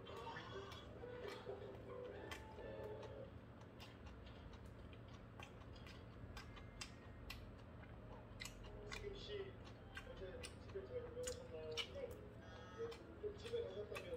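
Chewing and mouth smacks with scattered sharp clicks of metal chopsticks, the clicks coming more often in the last few seconds.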